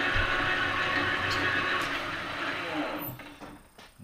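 Victor engine lathe spindle running while the tool takes a light facing cut on an aluminum part, a steady machine noise that dies away about three seconds in as the spindle is stopped and coasts down.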